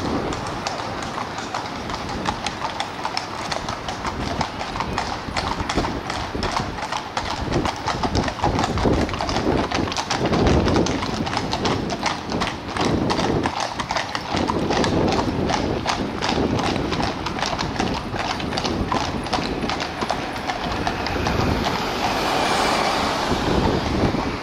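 Shod hooves of carriage horses drawing a landau, clip-clopping on the road in a quick, steady patter of many overlapping strikes.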